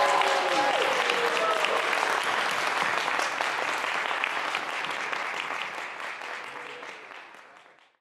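A small crowd applauding, fading out near the end.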